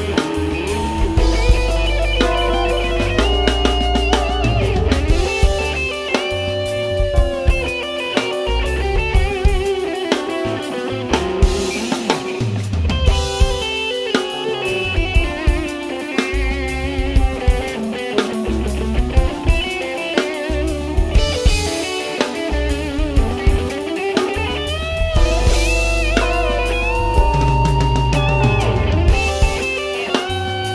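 Live rock band playing an instrumental passage: electric guitar lines over a steady drum-kit beat, with keyboard and a deep bass line underneath.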